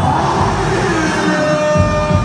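Loud live music through a concert sound system, with a performer's voice singing over it.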